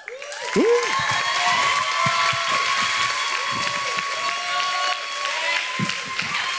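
Audience applauding and cheering, with whoops over the clapping.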